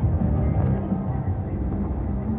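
IGT Lucky Larry's Lobstermania 3 slot machine spinning its reels, its game music and spin sounds playing over a steady casino din.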